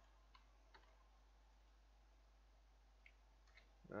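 Near silence, broken by a handful of faint clicks from a computer mouse and keyboard: two in the first second and a few more near the end.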